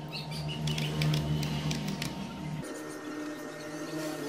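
A few computer mouse clicks in the first two seconds, over a steady low hum whose pitch shifts abruptly about two and a half seconds in.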